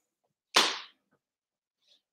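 A single short, sudden breath from a man, about half a second in, fading within a moment.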